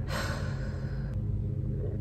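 A breathy sigh lasting about a second, over a steady low room hum.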